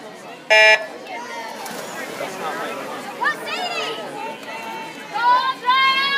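Electronic starting beep of a swim race: one short, loud, steady tone about half a second in. Spectators talk and shout around it, with louder cheering voices near the end.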